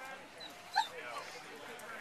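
A dog gives one short, high yip about three-quarters of a second in, over a murmur of people talking.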